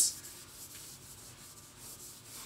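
Faint, steady rubbing noise over low room hiss.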